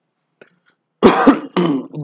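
A man clearing his throat once, a short harsh burst about a second in, followed by the start of his speech.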